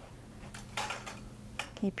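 Metal four-legged walker being lifted and set down step by step, giving two light clatters about a second apart.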